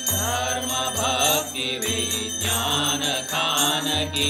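Devotional Hindu aarti song: a voice singing over steady musical accompaniment, with small bells jingling.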